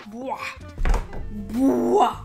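Music with a voice over it, and a single heavy low thump a little under a second in as headphones are pulled off and knocked against the microphone.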